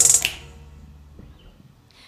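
A live band's final hit ending a song: a cymbal crash with the last chord, dying away within about half a second. A faint low note lingers to about a second and a half in.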